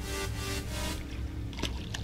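Background music with a steady beat and held notes, its treble dropping away about halfway through; a short sharp click near the end.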